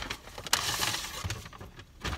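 Paper takeout bag rustling and crinkling as a paper plate of pizza is pulled out of it, with a sudden burst of crinkling about half a second in that fades over the next second.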